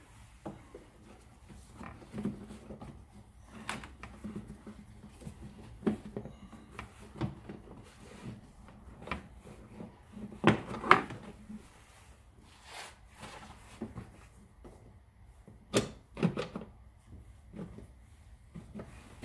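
Hard plastic cowl panel being handled and pressed into place under the windshield, with scattered knocks, clicks and scraping of plastic. The loudest knocks come about halfway through and again near the end.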